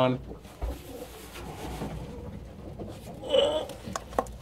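Domestic pigeons cooing faintly in a small loft, with a short louder call a little over three seconds in.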